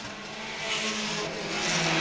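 Pure Stock race cars' engines running at speed as a pack of cars passes through a turn, the sound growing louder toward the end.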